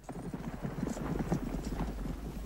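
Horses' hoofbeats, a quick irregular run of knocks, over a steady low hum.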